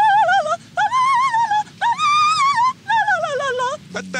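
A dog howling: four long, high-pitched cries, each under a second, with a wavering pitch.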